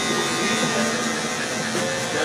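Electric hair clippers buzzing steadily as they cut hair.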